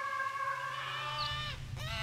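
A long, high held wail that dips in pitch and breaks off about one and a half seconds in, then starts up again. A low rumble builds underneath from about half a second in.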